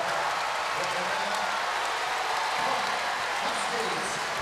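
Volleyball spectators cheering and clapping for a point won on a block at the net: a steady crowd noise with shouting voices in it.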